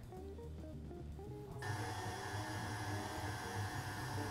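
Stand mixer running on low speed with its paddle attachment, creaming butter and cream cheese: a steady motor hum that gets fuller about a second and a half in. Background music plays underneath.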